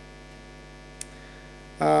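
Steady electrical mains hum from the talk's sound system during a pause, with a single short click about halfway through. Speech begins just before the end.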